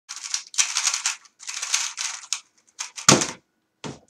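3x3 speedcube being turned very fast, in quick runs of clicking rattle. Near the end come two heavier thumps, the louder about three seconds in, as the cube is put down and the timer is stopped.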